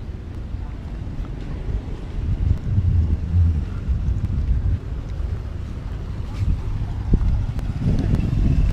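Wind buffeting the camera microphone, a low rumble that swells about two and a half seconds in and then eases.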